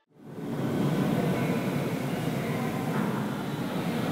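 Steady low rumbling ambience of a large hall, like ventilation noise, coming in just after a moment of silence at the start and holding even.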